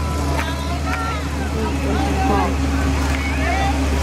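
Steady low engine drone from the vehicle towing a hayride wagon, with riders' voices talking over it.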